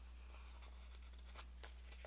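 Faint rustling and a few soft ticks of paper sticker sheets being handled, over a steady low hum.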